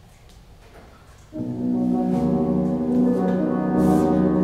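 After a second of quiet room tone, a grand piano begins an opera aria's accompaniment introduction with low, sustained chords, the bass filling in about two seconds in.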